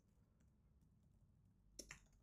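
Faint computer keyboard keystrokes, a scattering of soft clicks with a few sharper keypresses near the end.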